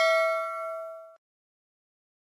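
Notification-bell chime sound effect ringing and fading, cut off abruptly a little over a second in.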